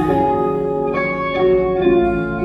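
Live band playing held chords of a slow ballad between sung lines, with no voice; the chord changes about a second in.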